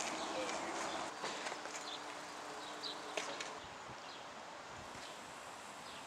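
Outdoor ambience: a steady hiss with faint bird chirps scattered through, a little quieter in the second half.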